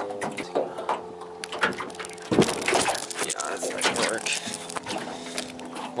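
Irregular knocks and clicks of hands working battery wire connections in an aluminum canoe, over a steady low hum. The loudest knock comes a little before halfway through.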